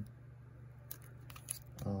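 Faint rustling and small plastic clicks from a trading card in a rigid plastic top loader and sleeve being turned over in the hands, a short cluster about halfway through. A low steady hum runs underneath.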